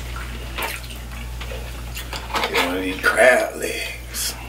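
Mouth sounds of people eating seafood boil: wet chewing and smacking in short clicks. From about two seconds in a voice hums "mm" for about a second, all over a steady low hum.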